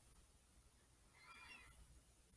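Near silence: room tone in a pause of the reading, with one faint, short, high-pitched arching sound about a second and a half in.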